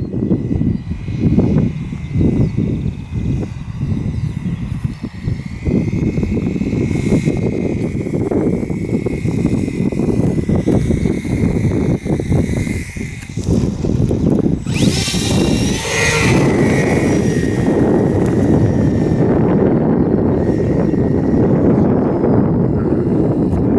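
Radio-controlled model airplane's motor and propeller buzzing in flight with a thin high whine, growing louder and sweeping in pitch as it passes close about fifteen seconds in. Underneath runs a loud, gusting low rumble.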